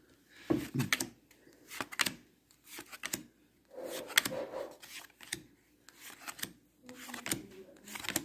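A stack of baseball trading cards being thumbed through one at a time, each card slid off the stack with a short papery flick, at an irregular pace of roughly one to two a second. Quiet murmured words come in between.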